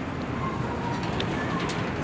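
Steady outdoor background noise with a pigeon cooing.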